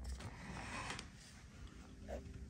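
Quiet room tone with a low steady hum and a faint soft rustle in the first second.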